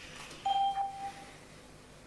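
A single electronic chime tone from the chamber's voting system, about half a second in and lasting under a second, signalling the close of an electronic vote.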